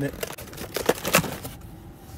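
Cardboard box lid being pulled open by hand: a quick run of short scrapes and rustles of cardboard, clustered about a second in.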